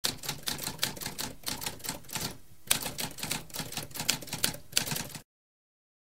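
Typewriter keys clacking in a rapid, uneven run of several strokes a second, with a short pause a little past two seconds in, stopping about five seconds in.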